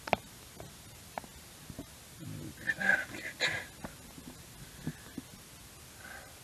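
Light handling sounds of someone working under a camper: a sharp click right at the start, scattered small clicks and knocks, and a short muffled burst of noise around the middle.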